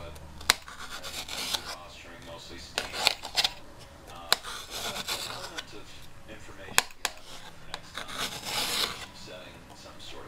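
Kitchen knife slicing a red bell pepper into strips on a plate: irregular sawing and scraping strokes through the flesh, with a few sharp clicks as the blade strikes the plate.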